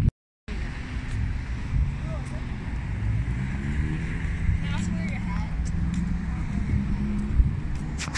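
Road traffic: a car engine rising in pitch as it accelerates past from about three seconds in, over a steady low rumble, with faint voices.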